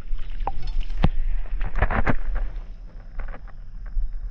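Splashing and rustling at the water's edge as a hooked smallmouth bass is landed onto the weedy bank, with a few sharp splashes about one and two seconds in. A low rumble of wind on the microphone runs underneath.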